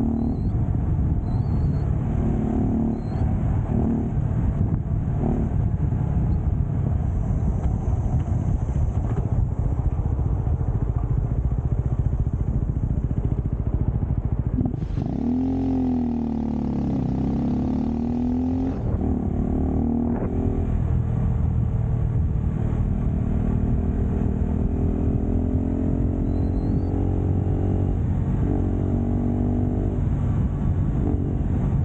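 Motorcycle engine running on the move under heavy wind rumble on the microphone. About halfway through the engine note drops and swings back up as the bike slows and picks up again, and near the end it climbs steadily as the bike accelerates.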